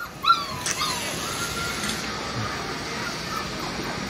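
Gaddi (Bhotia) puppy whimpering: a short high whine about a third of a second in, a second shorter whine just before a second in, then a faint held whine that fades out after about two seconds.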